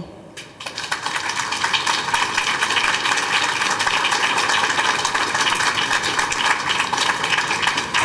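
Audience applauding: dense clapping that builds up within the first second, then holds steady.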